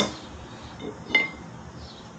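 Two sharp metal clinks, one at the start and one about a second in that rings briefly, as the removed steel front fork of a Razor RSF650 electric minibike is handled and lowered toward the concrete floor.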